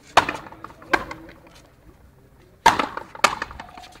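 Frontenis rally: four sharp cracks of the rubber ball struck by strung rackets and smacking off the fronton wall, coming in two pairs less than a second apart, with a pause of under two seconds between the pairs.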